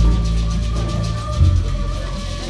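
Live ensemble music with a deep, held bass note and a low thump about one and a half seconds in.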